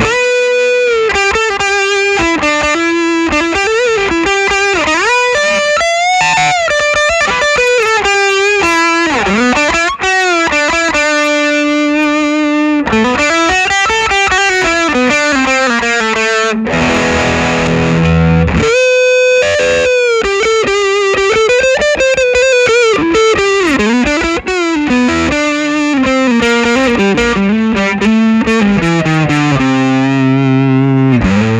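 Electric guitar, a gold-top Gibson Les Paul, played through a Fulltone PlimSoul overdrive/distortion pedal with its sustain knob at about twelve o'clock. It plays a singing distorted lead line with string bends and vibrato on held notes, and a ringing chord a little past halfway.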